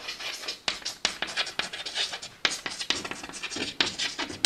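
Chalk writing on a blackboard: a quick run of short scratching strokes and taps.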